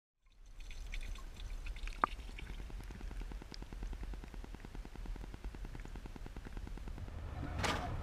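Water lapping and trickling gently against the edge of a wooden deck, with a low rumble under it and a single drip-like plink about two seconds in.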